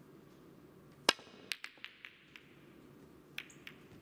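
Snooker balls clicking on the table: one sharp, loud click about a second in, then a quick run of lighter clicks, and two more clicks near the end.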